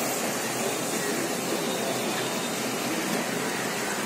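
Steady hiss of oil bubbling in a large iron kadai as beef bondas deep-fry.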